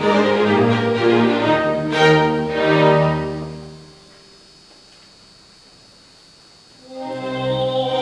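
Chamber orchestra playing a slow sacred piece, bowed strings to the fore, live in a concert hall. The music dies away about halfway through, leaves a pause of a couple of seconds, then comes back in near the end.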